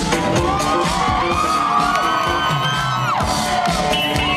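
Loud live electro-funk band music with guitar, keyboards and a steady beat, and the crowd cheering and whooping over it, heard from within the audience.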